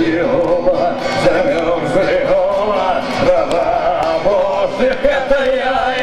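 A man singing with a strummed electric guitar in live performance, the voice wavering in a sustained melody over steady chords.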